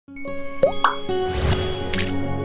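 Channel intro sound effects over sustained music chords: two quick rising pops a little over half a second in, a swelling whoosh, then a sharp hit near the end.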